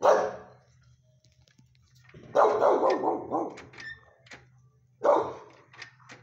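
Dog barking: a sharp bark at the start, a longer run of barks about two seconds in, and another short bark about five seconds in.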